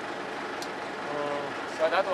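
Steady background noise on the deck of a small fishing boat at sea, with a brief faint voice about a second in.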